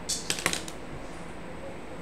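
A short run of about five quick, sharp clicks within the first second, like keys or buttons being pressed.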